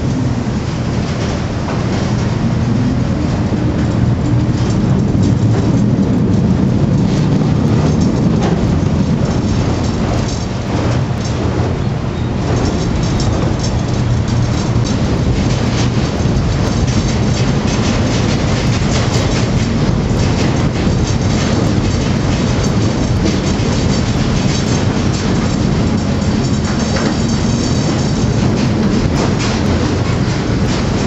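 Machinery of the Silver Spade, a Bucyrus-Erie 1950-B stripping shovel, running inside its machinery house. A loud, steady hum of electric motors and gearing goes with continual rattling and clattering of the machinery.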